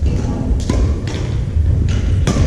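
Several sharp knocks of badminton rackets striking shuttlecocks, mixed with thuds of footsteps on a hardwood gym floor, over a steady low rumble.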